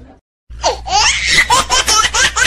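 High-pitched laughter, a rapid ha-ha-ha of about four to five bursts a second, starting abruptly after a moment of silence about half a second in.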